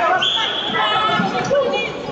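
Players' calls and chatter echoing in a large sports hall, with thuds of a volleyball on the wooden court.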